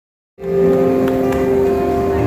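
A mixed choir singing sustained chords, several notes held at once; the sound cuts in abruptly a moment in.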